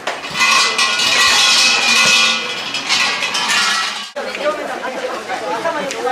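Large brass suzu shrine bells jangling as a visitor shakes a bell rope, ringing for about three and a half seconds and then breaking off abruptly. Crowd chatter follows.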